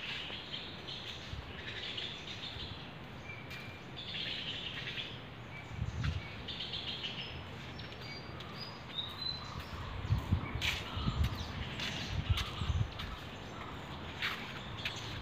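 Birds chirping in short, high calls, with a few low thumps in the last few seconds.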